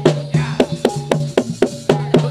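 Live Javanese gamelan accompaniment for a warok/jathilan dance: drums and pitched metal percussion struck in a quick, even beat of several strokes a second.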